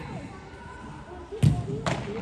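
Two sharp thumps of a soccer ball being struck, less than half a second apart, the first the louder, in an indoor arena.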